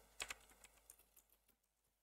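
A few faint computer keyboard keystrokes, mostly in the first second.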